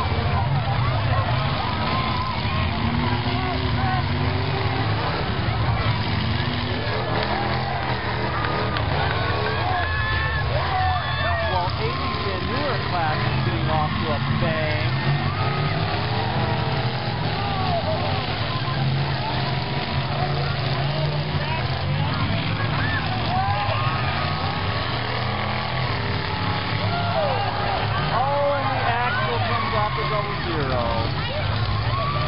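Demolition derby cars' engines running in the arena, a steady low drone, under the voices of a crowd of spectators talking and calling out.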